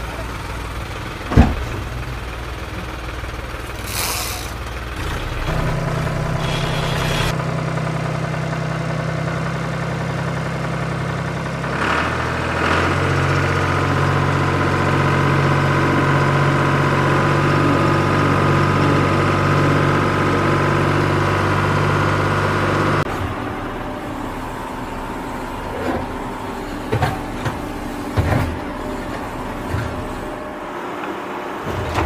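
Small DC hobby motors of a cardboard model combine harvester running with a steady hum. The hum starts about five seconds in, grows louder and fuller about twelve seconds in as more of the mechanism runs, and cuts off suddenly a little past the twenty-second mark. A single sharp click comes about a second in.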